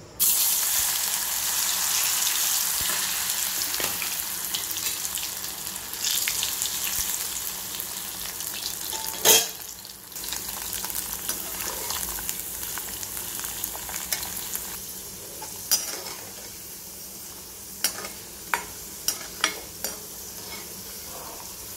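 Masala-coated potato pieces hitting hot oil in an aluminium kadai and deep-frying: a sizzle that starts suddenly and slowly eases as the pieces cook. A sharp knock comes about halfway, and a few short clicks near the end as the pieces are stirred with a perforated metal ladle.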